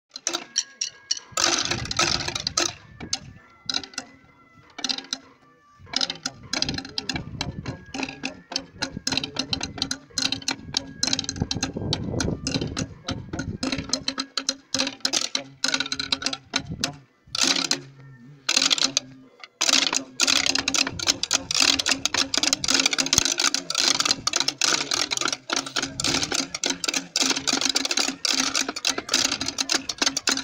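Pipe band playing: bagpipes holding a steady drone under the melody, with rapid snare drumming.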